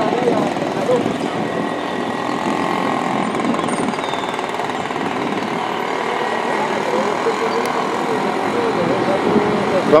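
Busy city street ambience: a steady mix of traffic noise and indistinct voices of passers-by.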